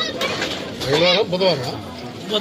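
A man's voice speaking with long, drawn-out syllables; nothing besides speech stands out.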